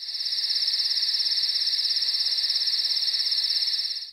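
A cricket trilling: a steady, high-pitched chirring made of rapid, even pulses, which starts and stops abruptly.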